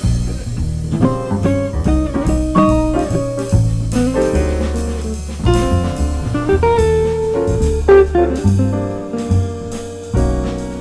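A jazz quartet playing: an archtop electric guitar, with upright bass, drum kit and piano.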